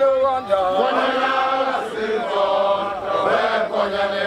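A group of men of a Zulu regiment chanting together in long held phrases, many voices singing as one.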